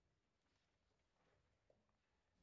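Near silence: room tone, with a few faint small clicks.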